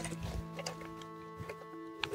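Faint sustained musical tones: several steady notes held together like a soft chord, with a note dropping out and coming back partway through.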